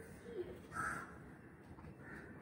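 A bird gives one short, harsh call about a second in.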